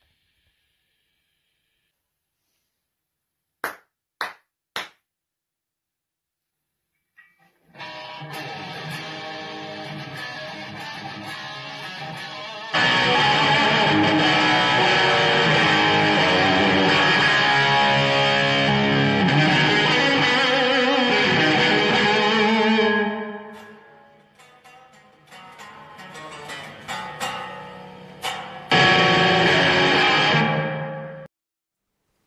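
Electric guitar played with gain through a BluGuitar AMP1 and NanoCab cabinet, in rock-lead lines. Three short clicks come first. The playing then starts, quieter at first, turns much louder a few seconds later, thins out about three-quarters of the way through, and comes back loud near the end.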